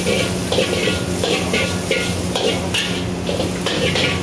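Metal wok spatula scraping and tossing noodles and vegetables around a steel wok as they stir-fry, in quick strokes about three a second, over a steady low hum.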